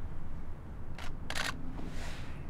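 Digital SLR camera shutters firing a couple of times about a second in, the second a quick burst of clicks.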